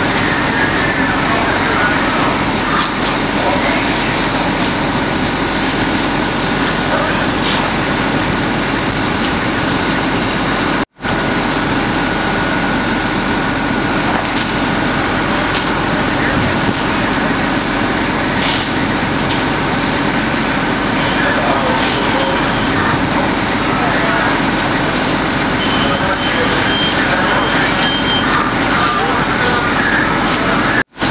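Heavy truck engines running steadily, with indistinct voices over them; the sound cuts out for an instant about eleven seconds in.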